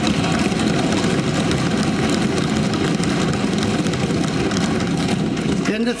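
Legislators thumping their desks in approval, a dense, continuous din of many rapid knocks mixed with voices, stopping just before the end.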